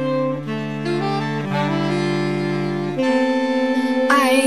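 Saxophone ensemble playing slow, held chords that shift to a new chord about every second or so, with no voice over them.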